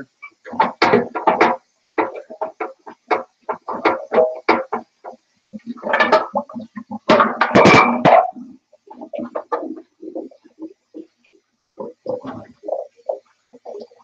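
Dishes and glass mason jars being washed and handled: an irregular run of knocks and clinks, loudest in two clusters a little past the middle.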